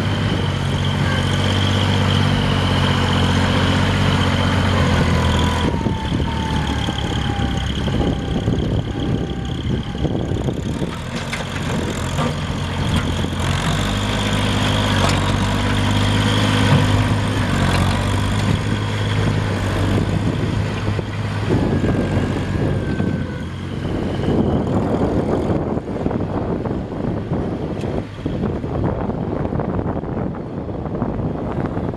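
2005 Kubota L39 tractor's three-cylinder diesel engine running as the tractor moves, its note shifting up and down, with a steady high whine over most of it.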